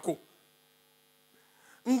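A short pause in amplified speech: near silence with a faint, steady electrical hum from the microphone's sound system. The voice trails off at the start and comes back near the end.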